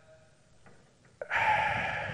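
A short hush, then about a second in a man draws an audible breath in close to his microphone, lasting about a second before he speaks again.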